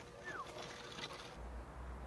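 Faint outdoor background noise with one short falling chirp about a quarter second in, and a steady low hum that sets in after a sudden change partway through.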